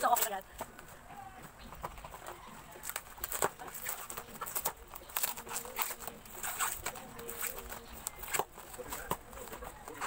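Plastic parcel wrapping crinkling and tearing in short, scattered snaps and crackles as it is pulled open by hand.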